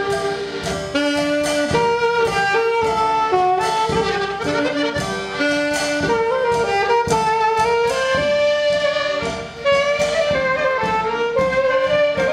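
Saxophone playing a sad tango melody over accordion, with a drum kit keeping a steady beat; instrumental, no singing.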